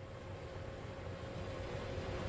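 Low, steady background noise of a bowling centre: an even hiss with a faint constant hum, and no distinct impacts.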